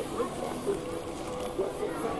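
Indistinct background chatter of several people talking at once, with no clear words.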